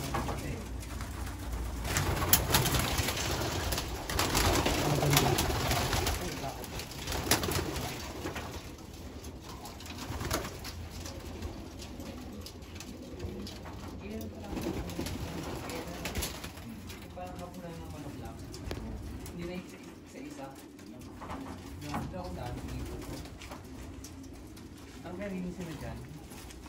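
Racing pigeons cooing in their loft, louder in the first seven seconds or so.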